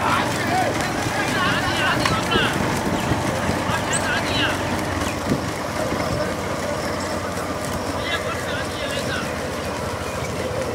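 Many motorcycle engines running together as a crowd of riders escorts a bullock racing cart, with men's shouts and calls over them.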